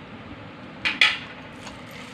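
Bare hands kneading minced chicken kofta mixture in a stainless steel bowl, with two short scrapes against the bowl close together about a second in.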